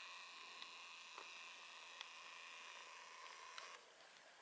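Faint steady whine of a camcorder's zoom motor, with a few tiny ticks, cutting off suddenly near the end.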